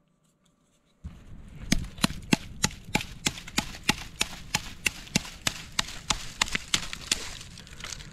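Small multitool hatchet chopping into a decayed log: a rapid run of sharp, evenly spaced strikes, about three a second, starting about a second in.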